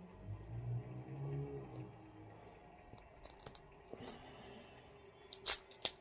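Thin plastic wrapping being picked and peeled off a pre-roll package, crinkling: a few scattered small crackles, then a louder quick cluster of sharp crackles near the end.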